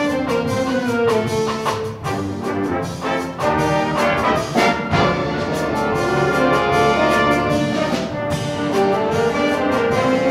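A student big band playing live, trumpets and trombones carrying the ensemble lines over the saxophones and rhythm section, with the drum kit keeping time.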